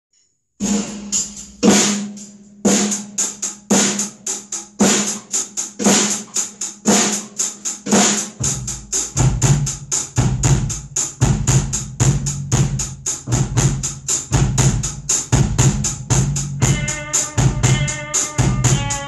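A maple drum kit (Gretsch Renown shells, Zildjian cymbals) played in a steady rock beat, with hi-hat strokes at about four a second and heavier snare and bass drum hits about once a second. A deep, sustained bass line joins about eight seconds in, and a chord of several pitched notes enters near the end.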